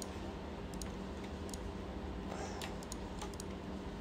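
Scattered, irregular clicks of a computer mouse and keyboard as objects are selected on screen, over a steady low hum of room and computer noise.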